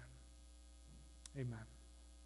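Steady low electrical hum, with one spoken "Amen" a little past halfway.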